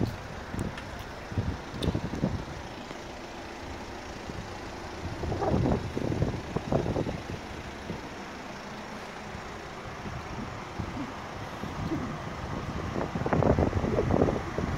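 A sharp click at the start as the BMW 530i's power trunk lid latches shut. Then steady outdoor background noise with wind on the microphone and soft, irregular thumps and rustles from walking around the car.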